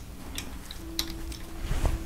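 A few faint clicks and taps of small plastic Lego pieces being handled and pressed into place on a build.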